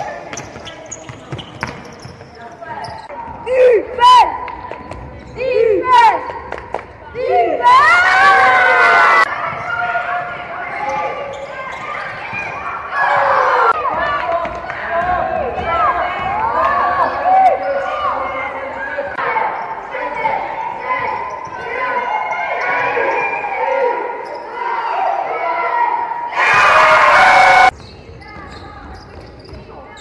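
Live game sound of indoor basketball in a gym hall: a ball dribbling, short pitched squeaks, players shouting, all echoing in the hall. Two loud rushing bursts, each about a second long, come about eight seconds in and near the end.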